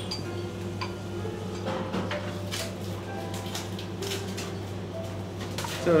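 Occasional light clinks of plates and utensils at a sushi counter, over a low steady hum.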